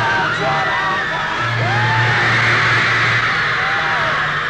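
Crowd of young fans screaming: many shrill voices overlapping and swelling around the middle, over a pop group playing live with steady low bass notes underneath.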